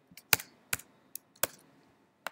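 About six separate keystrokes on a computer keyboard, irregularly spaced, the loudest about a third of a second in.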